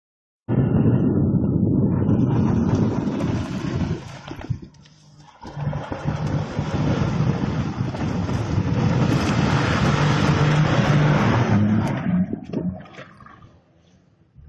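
A car's engine revving hard as the car slides around on loose dirt. The sound starts abruptly about half a second in, drops away briefly about four seconds in, and fades out near the end.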